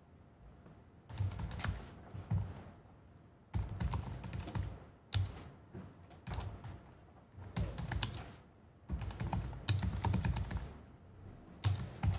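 Typing on a computer keyboard in bursts of quick keystrokes with short pauses between them, starting about a second in.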